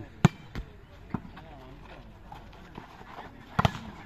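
Volleyball being hit during a rally: a sharp smack of the ball about a quarter second in, a couple of softer touches after it, and a loud double smack near the end as the ball is attacked and blocked at the net. Faint voices carry underneath.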